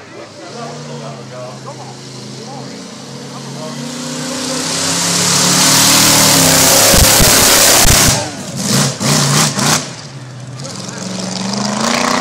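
The JCB GT backhoe loader's big drag racing V8 approaching and passing close at speed, loud and rising to a peak past the middle. It then dips and surges several times as it goes away, and swells again near the end.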